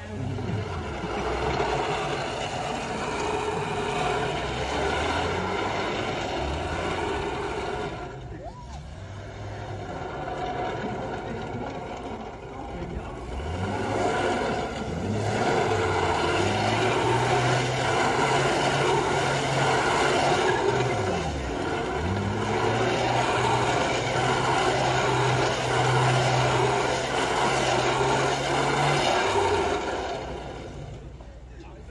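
Classic Mini's A-series four-cylinder engine revving hard as the car is driven around in a display, the revs rising and falling, dropping away twice, then held high and steady through the second half.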